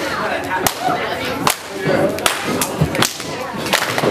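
Sharp hand claps, roughly one every second with a few extra ones in between, over the chatter of a small crowd in an echoing hall.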